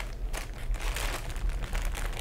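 Thin clear plastic bag crinkling as the plastic model-kit sprues inside it are handled, in light, irregular rustles.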